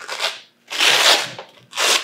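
Hook-and-loop (Velcro) fastener being torn apart in three ripping pulls, the middle one longest and loudest, as the magazine pouch panel is peeled off the front of a nylon plate carrier.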